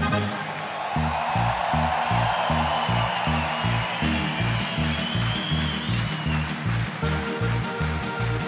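Live folk band playing an instrumental passage, a double bass plucking a steady beat, with audience applause in the first seconds.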